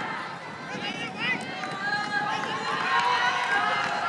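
Several voices shouting and calling over one another in short, rising-and-falling calls without clear words: onlookers cheering runners on during a race.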